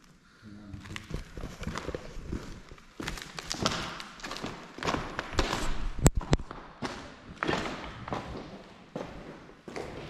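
Footsteps scuffing and knocking across a debris-strewn concrete floor, in an irregular series, with a single sharp click about six seconds in.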